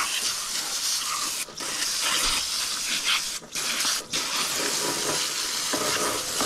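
Water spraying from a pistol-grip garden hose nozzle onto a gutted flounder, rinsing out the gut cavity: a steady hiss of spray that cuts out briefly a few times as the trigger is let go.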